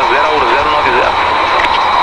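Steady, loud cockpit noise of an Embraer AMX A-1 jet fighter in flight, heard over the crew intercom as a hiss with steady high tones in it. A man's wavering whoop comes over the intercom and fades out about a second in.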